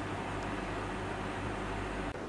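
Steady low hum and hiss of background room tone, with no distinct sound event.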